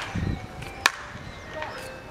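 Wooden baseball bat hitting a pitched ball, one sharp crack a little less than a second in.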